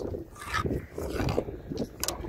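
Pencil scratching lines onto a limestone slab, faint and irregular, over a low steady rumble.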